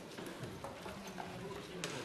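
Faint murmur of people talking and moving about in a large debating chamber, with a sharp knock near the end.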